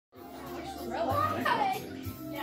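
Children's voices talking and exclaiming, with high pitch rising and falling.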